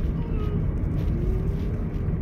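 Steady low rumble of a car's road and engine noise inside the cabin while driving, with a faint tone rising slowly in the second half.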